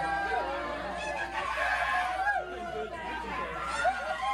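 Several overlapping voices chattering and calling out at once, over a low steady hum.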